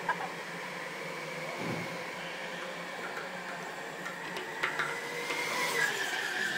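Steady background noise of an indoor go-kart track, with a go-kart's high motor whine growing louder near the end as a kart passes close by.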